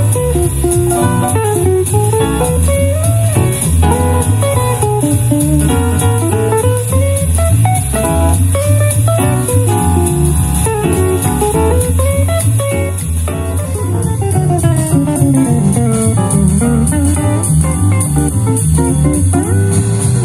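Instrumental guitar music: a lead line of gliding notes over a steady, pulsing bass, played through a JBL Horizon 2 Bluetooth clock-radio speaker.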